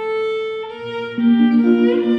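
Violin and electric guitar playing an instrumental piece in long held notes: a sustained violin note, with low guitar notes coming in underneath about a second in.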